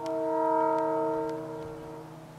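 Diesel locomotive horn sounding one long blast, a chord of several steady tones. It starts sharply, is loudest about half a second in and fades away near the end.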